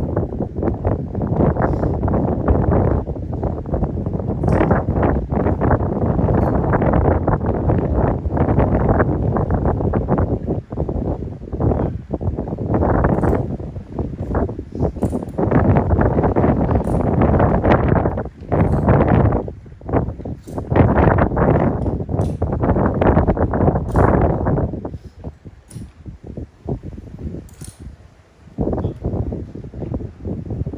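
Wind blowing across the microphone in uneven gusts, dropping away about five seconds before the end.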